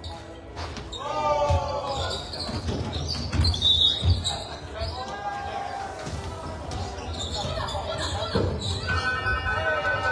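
Basketball game in a large gym: a ball bouncing on a hardwood court amid players' and spectators' voices and calls, echoing in the hall. A steady high tone starts near the end.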